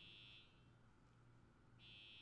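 Near silence, with a faint high-pitched electronic buzz twice, each about half a second long, once at the start and once near the end.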